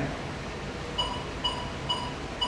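Permobil R-Net joystick module giving three short, identical electronic beeps about half a second apart as its speed lever is pressed down. Each beep marks one step down in the chair's maximum speed setting.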